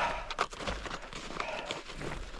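A few irregular soft crunches of steps in packed snow.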